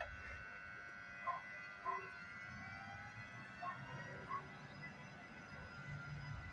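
Electric locomotive approaching: a faint high whine of steady tones, some slowly rising in pitch as it gathers speed, with a low rumble building in the second half. A few short chirps come through above it.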